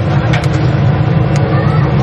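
Falafel frying in a deep fryer: oil sizzling over a steady low rumble, with a few sharp metal clicks from a falafel scoop as balls of mix are dropped into the oil.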